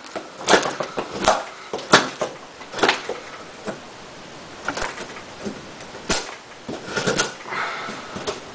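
Gerber Profile fixed-blade knife carving curls off a wooden block. Each stroke is a short, sharp cut-and-scrape of the blade through the wood, about ten of them at uneven spacing, roughly one a second.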